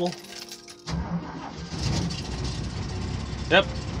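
Toyota FJ40 Land Cruiser's carbureted inline-six engine starting cold on partial choke after a few pumps of the gas pedal. It starts about a second in and keeps running steadily.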